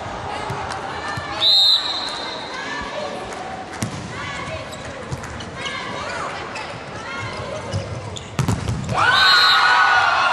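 Indoor volleyball rally: a referee's whistle blows about a second and a half in, then come ball strikes and sneaker squeaks on the court. Near the end a second whistle ends the point as the crowd starts cheering.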